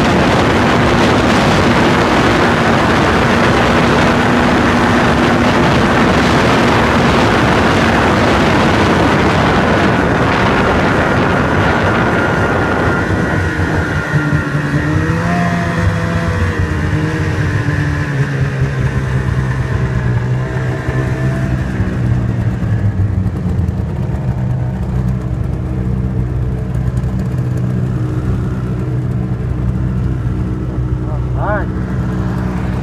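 Snowmobile running at trail speed with a dense rushing noise. About halfway through it eases off and slows, its engine note dropping and wavering before settling to a lower, steady running note.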